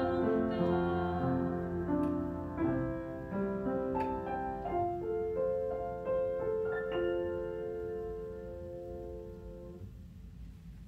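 Slow, calm piano music with long held notes, growing quieter and dying away near the end.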